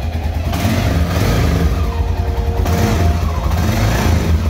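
Air-cooled single-cylinder dual-sport motorcycle engine running with a steady low rumble, warming up while residue smokes off the hot exhaust header.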